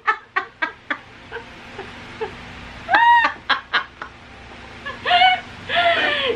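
A woman's high-pitched, cackling laughter in short staccato bursts, with a long rising-and-falling squeal about three seconds in and more laughing near the end, over a faint steady low hum.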